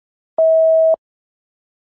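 Electronic countdown-timer beep: one steady tone about half a second long, starting about half a second in, marking the quiz timer running out.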